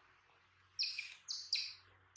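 A baby monkey's three short, high-pitched squeaking calls in quick succession, starting about a second in.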